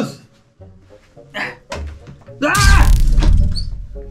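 A sudden loud noise about two and a half seconds in, a deep rumble under a wavering, voice-like wail that lasts about a second, over background music.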